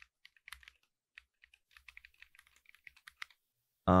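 Typing on a computer keyboard: a quick, uneven run of key taps that stops about three seconds in.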